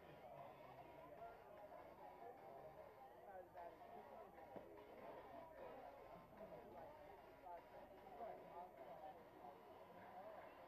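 Near silence: faint ballfield ambience with distant, indistinct voices of players and spectators.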